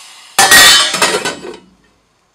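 Metal lid put onto a stainless-steel stockpot: a loud metallic clatter about half a second in, fading out over about a second.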